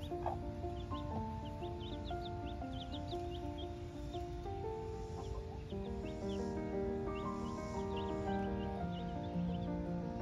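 Baby chicks peeping, many short high peeps in quick succession, over background music of slow held notes.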